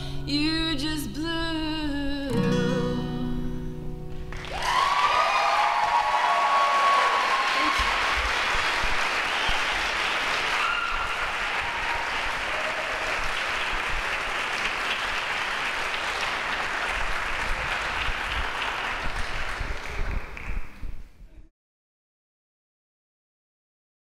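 A female voice holds the final sung note over a ringing acoustic guitar chord. At about four seconds in, audience applause breaks out with a few whoops at the start, keeps up steadily and cuts off just before the end.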